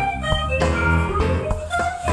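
A band playing an instrumental groove: electric guitar, bass guitar, Hammond organ and drum kit together.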